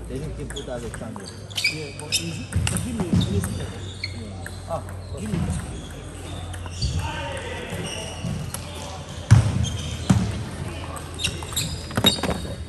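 Table tennis balls clicking off bats and tables at irregular intervals, with several sharp ticks and one louder knock about nine seconds in, over a murmur of voices in a large hall.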